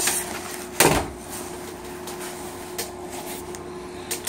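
Handling noise from a nylon tactical vest and its pouches being shifted about, with one heavy thump about a second in and a few light clicks later, over a steady hum.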